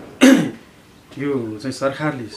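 A man clears his throat once, a short harsh burst about a quarter of a second in, followed by his speech.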